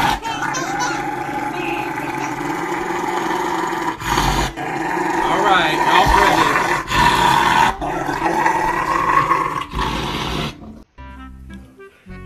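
A Rottweiler growling loudly and at length, in long growls with a few short breaks. About a second before the end the growling cuts off and music takes over.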